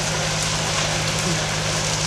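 A large open fire crackling and hissing over the steady low hum of an idling engine.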